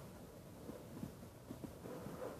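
Quiet room tone with a few faint, brief taps.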